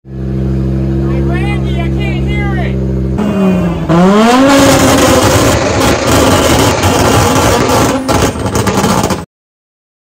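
Audi quattro Group B rally car's engine idling, then revved hard about three seconds in, its pitch dipping and then climbing steeply. It becomes a very loud racket that overloads the microphone into distortion, then cuts off abruptly near the end.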